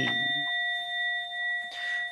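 A Buddhist kin, a bowl-shaped temple bell, ringing on after a single strike: a steady, clear tone of several pitches that fades out near the end. The chant voice dies away in the first moment.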